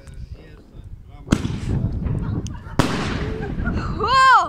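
Two firework explosions about a second and a half apart, each a sharp bang followed by a long echoing rumble.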